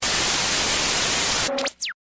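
TV static sound effect: a steady hiss for about a second and a half, ending in a short rising tone and a quick falling whine before it cuts off.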